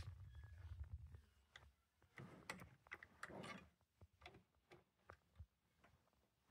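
Faint clicks and light metallic taps of open-end wrenches working a router's collet nut as the bit is tightened, with a brief low rumble of cloth brushing the microphone at the start.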